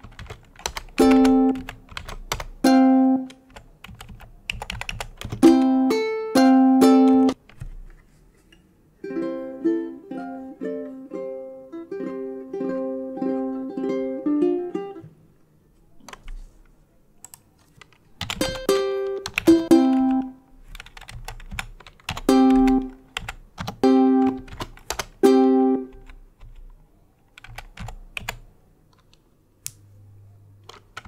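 Ukulele notes from tab-writing software's playback, sounding singly or in twos every second or two as notes are entered. A quicker run of notes plays from about nine to fifteen seconds in. After a short pause more single notes follow, and the end is quiet.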